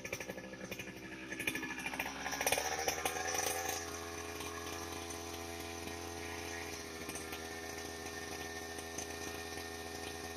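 Two-stroke brush cutter engine revving up from a pulsing, uneven low speed, climbing in pitch over the first few seconds, then running steadily at high speed.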